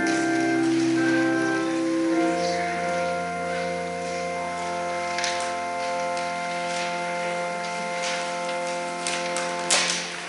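Organ playing a slow prelude. A chord change comes about two seconds in, then a long held chord that stops just before the end, with a few clicks near the end.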